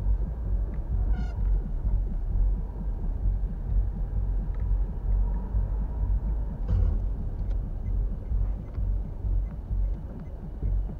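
Low rumble of a car's engine and road noise inside the cabin as it creeps through slow traffic, picked up by a dashcam's microphone. A brief faint high blip comes about a second in, and a short click comes a little before seven seconds.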